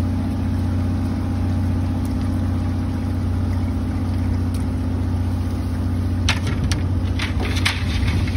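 A boat's engine idling, a steady low hum that holds even throughout. A few sharp clicks and knocks come in the last two seconds.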